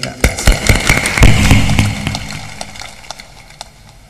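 Hands clapping in applause: loud separate claps close to the microphone over the clapping of a crowd. It peaks in the first second or so and dies away within about three seconds.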